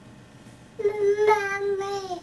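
Baby vocalizing: one long, high, level-pitched 'aah' starting about a second in, with a brief break near the end and a downward slide in pitch as it stops.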